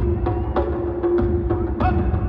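Live band music over a hall PA system: a steady drum beat with heavy bass under a long held note.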